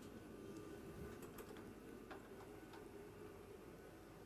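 Near silence: the faint steady hum of a space station module's cabin air, with a few faint ticks about a second to three seconds in.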